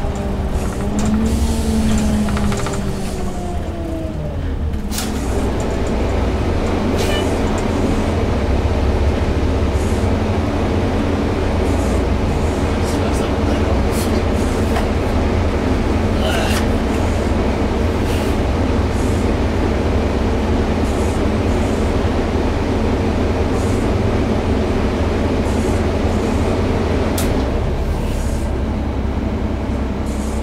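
Gillig transit bus under way, heard from inside the cabin near the driver: a steady low engine and drivetrain drone, with a few sharp clicks and rattles.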